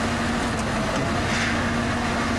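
Excavator engine running steadily: a constant rumbling drone with a steady hum-like tone through it.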